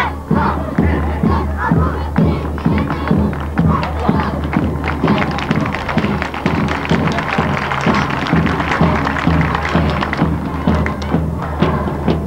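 Voices chanting together over a steady drum beat.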